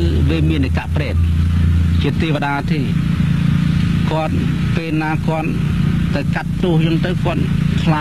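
A man's voice speaking continuously, a monk giving a dharma talk in Khmer, with a steady low hum underneath.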